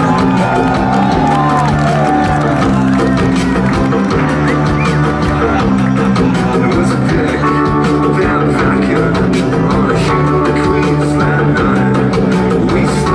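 Live rock band playing loud, with amplified electric guitar, bass and drums, and a singer's voice over it. Bent guitar notes slide in pitch near the start.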